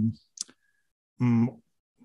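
A man speaking haltingly into a handheld microphone: the end of a word, a single short click a moment later, then one more short syllable between silent pauses.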